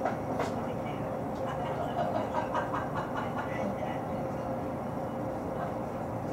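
Cab noise inside a JR 209-series electric train: a steady hum with one constant mid-pitched tone, a sharp click just after the start and a run of light clicks and knocks between about one and a half and three and a half seconds in.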